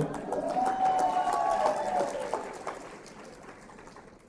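Audience clapping with a long held whoop from the crowd, dying away over about three seconds.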